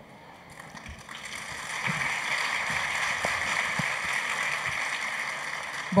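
Audience applauding, swelling over the first couple of seconds and then holding steady before easing off near the end.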